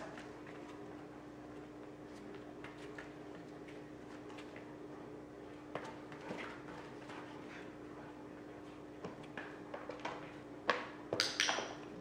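Quiet room with a steady low hum and scattered light taps and bumps as a dog steps about and climbs into a small plastic tub on a foam-mat floor, with a cluster of sharper clicks and knocks near the end.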